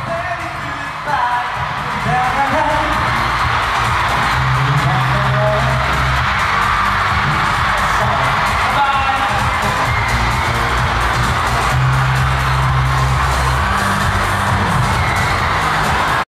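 Pop song with singing playing loudly through a concert hall's sound system, with a steady bass line, and audience noise mixed in.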